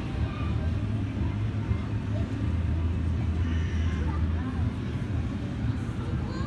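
Indistinct chatter of visitors in an indoor hall over a steady low hum.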